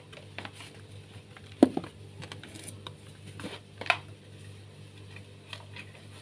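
Kitchen handling sounds while a bowl of softened crackers is being seasoned: scattered light taps and clicks of utensils and seasoning containers, with two sharper clicks about one and a half seconds and four seconds in, over a steady low hum.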